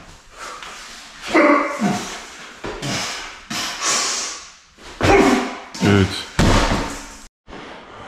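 A giant steel dumbbell being cleaned and pressed overhead: sharp grunts and hard breaths of effort, with several sudden heavy thuds.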